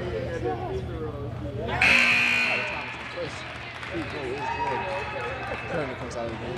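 Voices and chatter from a gymnasium crowd at a basketball game, with a sudden loud burst of noise about two seconds in that fades over about a second.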